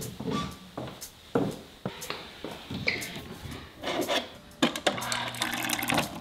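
A run of footsteps on hardwood stairs, sharp separate steps. Near the end comes water pouring into a plastic cup from a refrigerator door dispenser, over the dispenser's low hum.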